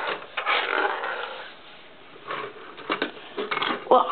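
Handling noises: a brief rustle, then scattered light clicks and knocks of small plastic Lego pieces being moved and set down on a wooden desk, with one sharper knock near the end.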